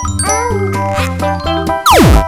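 Light children's background music with a steady bass line and twinkly jingle accents. Near the end a loud cartoon-style sound effect sweeps sharply down in pitch with a noisy burst.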